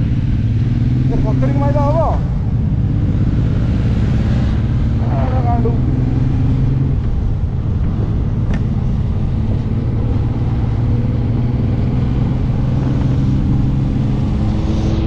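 Suzuki Intruder cruiser motorcycle's engine running steadily at cruising speed, heard from the saddle over constant wind and road noise.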